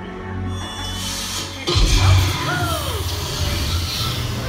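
Show soundtrack of a theme-park ride playing dramatic music. About halfway through it swells suddenly into a loud low rumble with a falling whine.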